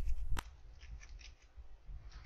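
A few keystrokes on a computer keyboard: one sharp key click about half a second in, then a couple of fainter taps.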